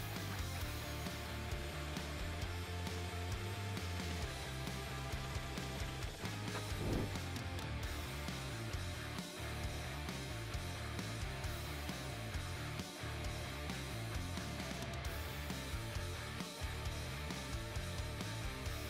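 Background instrumental music with guitar and a low bass line that steps from note to note.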